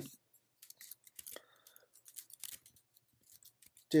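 Computer keyboard keys being typed: a string of light, irregular clicks.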